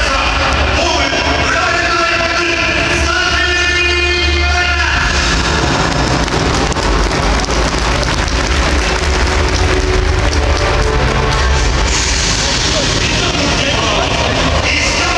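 Music over a stadium public-address system, with a steady heavy bass beat; held pitched tones in the first five seconds give way to a denser, noisier wash.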